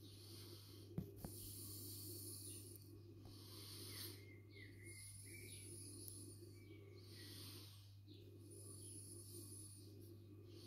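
Quiet, slow breathing close to the microphone, a breath about every three seconds, over a steady low hum. Two small sharp clicks come about a second in.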